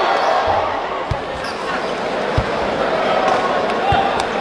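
Basketball bouncing on a hardwood court: three low dribble thumps roughly a second and a half apart, over a steady arena crowd murmur.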